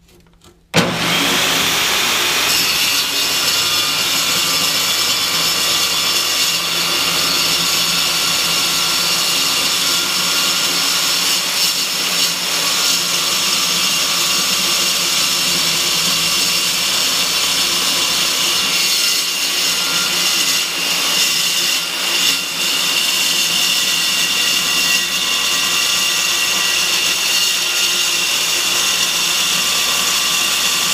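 Milwaukee metal-cutting circular saw with a carbide-tipped blade starting up about a second in and cutting through 3/8-inch steel plate, running loud and steady.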